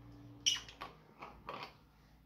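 A few light knocks and clinks from handling an opened aluminium drink can: one sharper click about half a second in, then several fainter taps.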